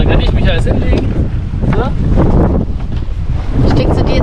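Strong wind buffeting the microphone aboard a small sailboat under sail in a fresh breeze, with water washing past the hull.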